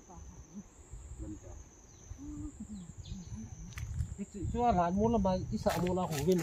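A steady, high-pitched insect drone, wavering slightly in pitch, with a low rumble underneath; a voice starts talking over it about four and a half seconds in.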